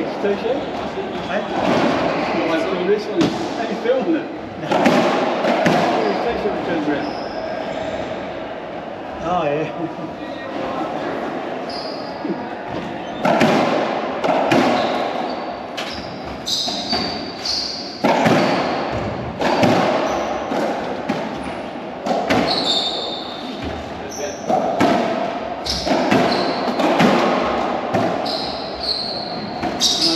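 Racquetball play in an echoing court: repeated sharp smacks of the ball off racquets and walls, with short high squeaks of shoes on the wooden floor.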